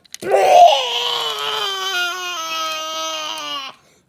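A child's voice making one long, drawn-out vomiting noise, loudest at the start, its pitch slowly falling for about three and a half seconds.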